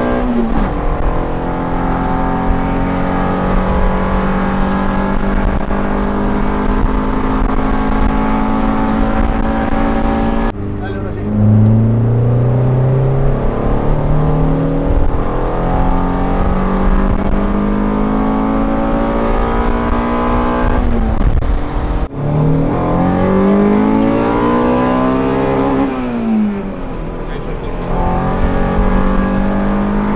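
In-cabin sound of a Honda Civic EG's swapped Honda B18C GSR four-cylinder DOHC VTEC engine accelerating on the road, its note climbing with the revs. Near the end the revs rise to a peak and drop sharply at a gear change. The note jumps abruptly twice along the way.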